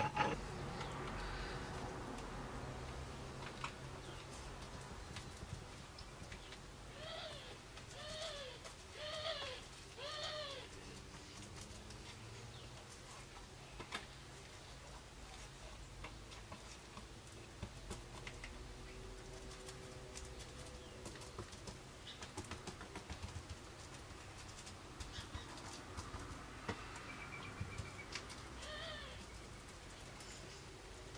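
Quiet workbench sounds of a laminating roller being rolled over resin-wetted fibreglass cloth to push the resin through, with faint scattered ticks. About a third of the way in come four short squeaky rising-and-falling calls, about a second apart, and there is one more near the end.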